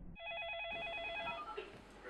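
An electronic ringing tone, warbling rapidly between two pitches for about a second before it stops.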